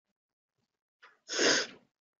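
A person sneezing once: a faint intake a second in, then one sharp burst lasting about half a second.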